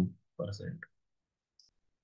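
A man's lecturing voice trailing off into a few soft words, then near silence broken by one faint click.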